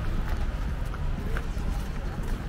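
Footsteps of several pedestrians on stone paving, irregular sharp clicks, over a steady low city rumble.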